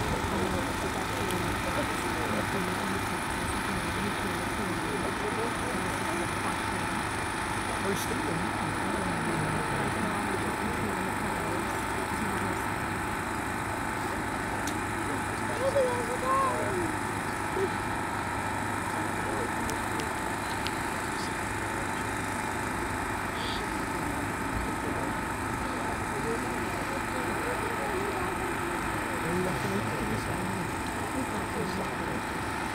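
A small engine running steadily with an even hum, under indistinct voices of people talking, one voice briefly louder about halfway through.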